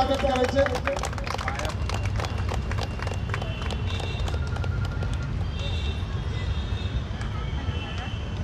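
Scattered hand clapping from an audience, with irregular sharp claps that are thickest in the first few seconds and thin out later, over a steady low hum.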